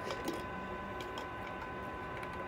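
A few faint, light clicks of broken plastic parts being picked up and handled, over a faint steady high-pitched tone.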